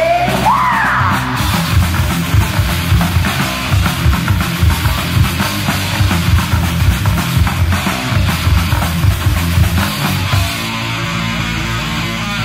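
Heavy metal band playing an instrumental passage, with drums and bass driving a fast beat.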